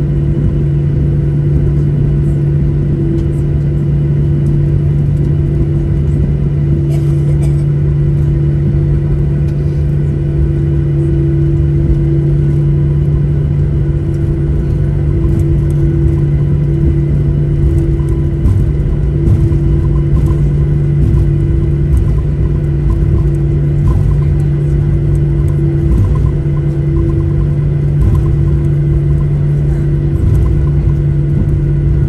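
Cabin noise of a Boeing 737-800 taxiing: its CFM56-7B engines running at idle, heard as a steady low hum with a rumble underneath.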